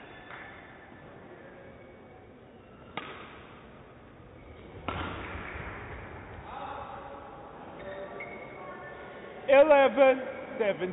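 Badminton racket strikes on a shuttlecock during a rally, with two sharp hits about three and five seconds in, echoing in a large sports hall. A loud shout comes near the end as the rally ends.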